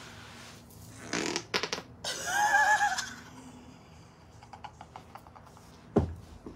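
Vaginal flatulence (queef) forced out as she moves on all fours: a rapid sputter of pops, then a loud wavering squeal lasting about a second. A sharp thump comes right at the end as her body drops onto the carpeted floor.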